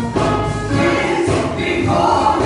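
Gospel song sung by a woman and a man into handheld microphones, over instrumental accompaniment.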